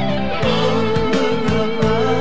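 Slow rock instrumental passage: an electric lead guitar slides down into one long sustained note over bass and drums.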